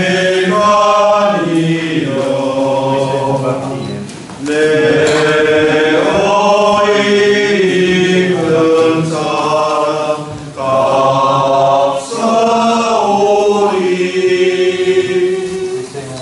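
A congregation singing a slow hymn during communion, in long held phrases with brief pauses between them.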